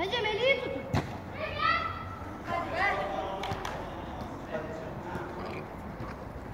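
Children calling and shouting in short high-pitched bursts during a kids' football game, with one sharp thump of the ball being struck about a second in.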